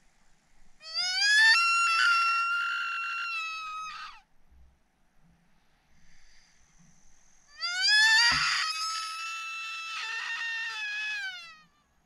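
Sika stag calling in the rut: two long, high-pitched screams, each rising steeply in pitch at the start and then held, the second falling away at its end.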